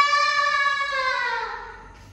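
A single long buzzing tone, sliding slowly down in pitch and fading: a rejected card swipe, the reader's 'too fast' fail buzz.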